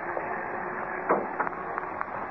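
Radio-drama sound effect of a car engine running as the car drives off, under the steady hiss of an old 1940 broadcast recording, with a brief voice sound about a second in.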